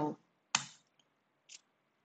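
Laptop keyboard keys clicking: a sharp keystroke about half a second in, a faint tick, and another short click about a second later.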